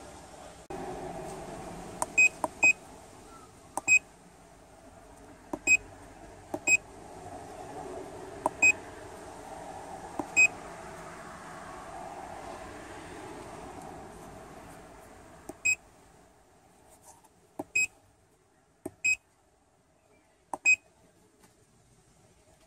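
Handheld MaxiDiag Elite OBD scan tool beeping as its buttons are pressed: about eleven short, high beeps at irregular intervals. A steady background hum runs beneath them and drops away about two-thirds of the way through.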